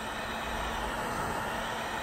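Electric heat gun running: a steady rush of blown air with a faint low hum underneath.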